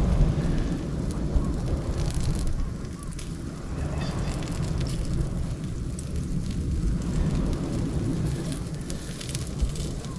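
Wood embers crackling and ticking faintly under sausages roasting on skewers, over a steady low rumble.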